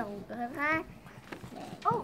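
A young child's voice making short wordless vocal sounds that rise in pitch, about half a second in and again near the end.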